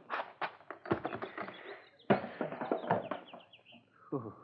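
Radio-drama sound effect of a car's glove compartment being opened and searched: a run of clicks and knocks that fades out near the end.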